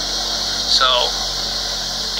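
A steady hiss with a low hum beneath it runs throughout, with one short word from a man's voice just before the 1-second mark.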